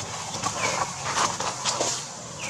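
Footsteps crunching and crackling in dry leaf litter, a few irregular steps a second, with one short high call falling in pitch about half a second in.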